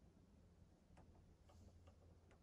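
Near silence broken by a few faint, irregular clicks in the second half: buttons of a TV remote control being pressed to navigate the app menu.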